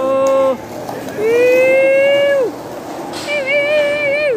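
A person's voice calling out in long drawn-out held notes, three in a row, the last one wavering.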